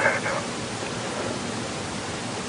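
A steady, even hiss with no other sound in it, after a brief fragment of a voice at the very start.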